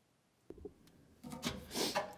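Faint rubbing and scraping handling sounds from someone working under the car. They begin about half a second in with a click and grow louder near the end.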